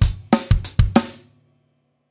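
Closing drum fill ending a band's folk song arrangement: six quick drum-kit and cymbal hits in about the first second, over a low held note. The last hit and the note ring out and stop a little past a second in.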